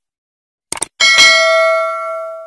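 Sound effect of a subscribe-button animation: a quick mouse-style double click, then about a second in a bell ding that rings on with a clear tone and fades away.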